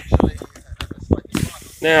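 A short hiss lasting about half a second, just before the word "Now" near the end, with a few faint clicks earlier.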